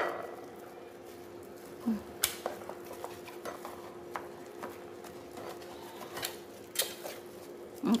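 Scattered light clicks and knocks of a metal cake pan being handled as a steamed cake is eased out of it, about four sharper ones, over a steady faint hum.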